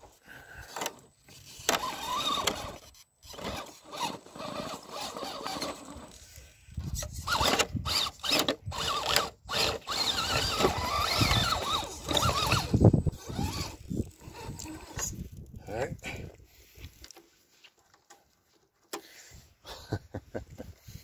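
Electric RC rock crawler's motor and gearbox whining, the pitch rising and falling with the throttle, with knocks of the chassis on rock as it is winched up by a recovery rope. The whine stops about three seconds before the end.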